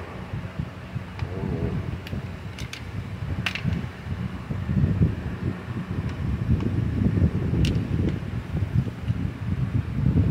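Stihl MS 192 TC top-handle chainsaw pulled over on its recoil starter, the engine turning over without firing because it has no ignition coil. An irregular low whirring that grows stronger in the second half.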